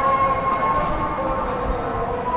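A steady, unchanging high whine holding one pitch with overtones, over a low street rumble.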